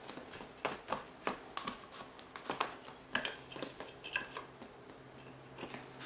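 Irregular plastic clicks and knocks as the cover of a Deltec media reactor, packed with carbon beads, is fitted and turned into place by hand.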